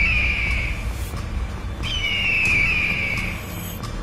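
Bird-of-prey screech sound effect: two long, high cries, each falling in pitch, about two seconds apart, over a steady low rumble.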